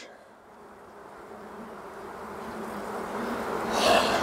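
Honeybees of a calm colony humming steadily around an open hive while a frame of bees is held up, under a rushing noise that grows steadily louder.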